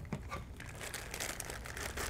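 Thin clear plastic bag crinkling irregularly as hands grip and unwrap it.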